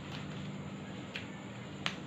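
Soft modelling clay being squeezed and kneaded by hand, giving three short sharp clicks, the loudest near the end, over a steady low hum.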